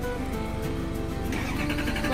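Background music with steady held tones over a low rumble, with a brief wavering voice-like sound near the end.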